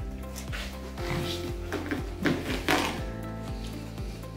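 Background music with a steady beat, over a few short brushing strokes of a brush or terrier pad through a wire fox terrier's chalked leg coat, two of them close together past the middle.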